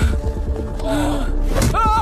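Action-film background music with a low pulsing beat. Over it, a man's short grunt comes about a second in, and a strained, wavering yell comes near the end, as fighters lunge and grapple.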